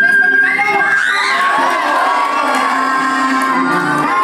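An audience of students cheering and shouting, with loud rising and falling whoops, over the dance music.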